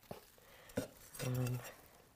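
Garden hand trowel scooping and scraping potting soil in a plastic tub, with a couple of short knocks. A short hummed voice sound comes a little past halfway.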